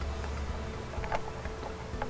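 Quiet handling of plastic wiring connectors, with a couple of light clicks about a second in, over a low steady hum.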